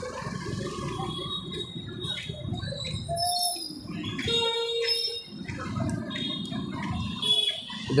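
Busy street traffic: motorbike and car engines running and passing slowly in a jam, with a crowd's voices behind. A short steady tone sounds about four seconds in.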